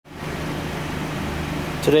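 Steady low mechanical hum, even in pitch and level throughout.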